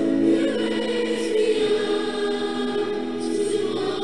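Background choral music: a choir singing long, held notes.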